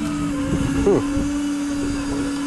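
Electric deep-drop fishing reel's motor whining steadily as it winds in line under the load of a hooked fish.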